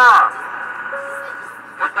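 Hiss and static from a CB radio's speaker in the gap between two stations' transmissions, with a faint short whistle about a second in. A received voice ends just after the start, and another begins near the end.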